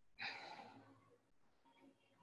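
A woman's single audible breath out, starting sharply about a quarter second in and trailing off over about a second, as she lowers her legs with effort in a Pilates exercise.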